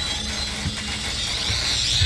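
Darksaber's low electric hum with a steady crackle. Near the end a wavering, rising whine and sizzle join in as the blade's tip drags across the metal floor grating.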